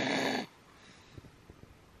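A man's breathy, snorting laugh that cuts off about half a second in, followed by near quiet with a few faint ticks.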